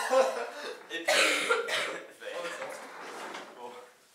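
Indistinct voices, with a loud short burst about a second in, then quieter talk.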